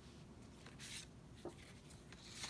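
Faint rustle of paper as a page of a handmade paper journal is handled, with a short swish about a second in and a light tap about half a second later.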